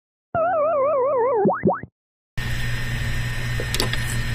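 A cartoon-style boing sound effect: a buzzy pitched tone warbling about six times a second and sliding slowly down for about a second, then two quick upward swoops. After a short silence, the steady hum of a small room comes in, with a couple of faint clicks near the end.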